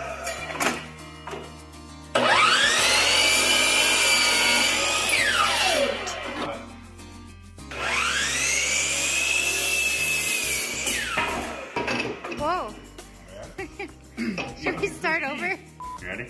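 Miter saw cutting red oak 2x2 twice: each time the motor whines up to speed, runs for about three seconds through the cut, then spins down with a falling whine.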